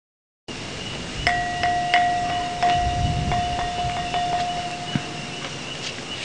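Metal chimes struck again and again, a dozen or so light strikes with a few clear notes ringing on and overlapping. The sound cuts in suddenly about half a second in and is still going at the end.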